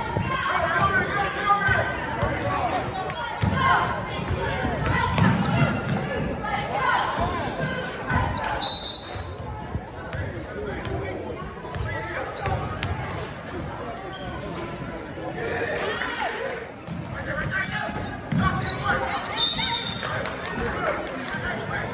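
Basketball dribbled on a hardwood gym floor, with repeated bounces under the indistinct voices of players and spectators in the gym.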